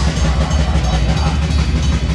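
Metal band playing live: distorted electric guitars, bass guitar and drums in a loud, dense, unbroken wall of sound with a heavy, pounding low end.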